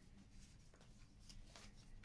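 Faint rustling and a few light ticks of hand-drawn paper cards being handled and one laid down on a wooden table.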